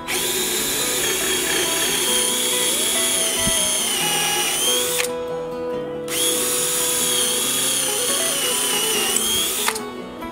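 Cordless DeWalt drill boring pilot holes into a 2x4 with a twist bit: a high motor whine that sags in pitch as the bit bites. It runs twice, about five and about four seconds, with a short stop between. Guitar music plays underneath.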